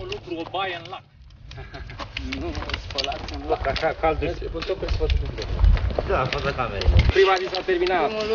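Hikers' voices talking over one another, mixed with a low rumble of wind on the microphone and scattered sharp clicks of trekking poles and boots on rock.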